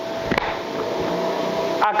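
A coin flicked up with the thumb: a single short, sharp click about half a second in, over a steady workshop hum with a faint constant tone.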